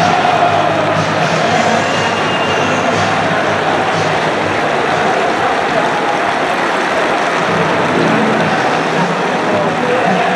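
Large football stadium crowd applauding and cheering, a loud steady din of clapping and many voices.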